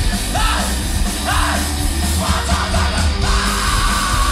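Live rock band playing loudly, with guitars, bass and drums, and yelled vocal phrases over it. A held, wavering note comes in about three seconds in.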